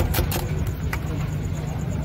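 Spring-coil whisk beating egg batter in a steel bowl, rapid clinking strokes about six a second that stop about half a second in, with one more knock shortly after. A steady low rumble runs underneath.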